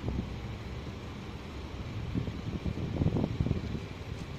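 Wind rumbling on the microphone outdoors, with stronger irregular gusts in the second half.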